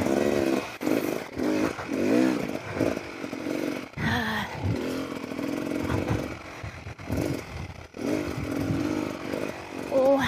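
Beta Xtrainer 300 two-stroke dirt bike engine revving, its pitch rising and falling over and over as the throttle is worked while riding.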